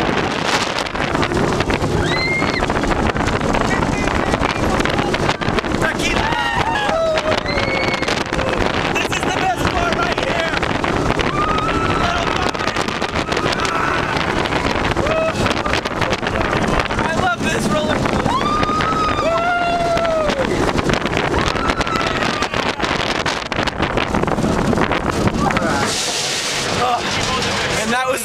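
Wind buffeting the microphone and the rumble of the Goliath steel hypercoaster's train running through its course, with riders letting out long rising-and-falling yells several times.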